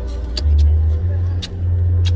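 Steady low rumble of a car's interior with the engine running, with a few short light clicks.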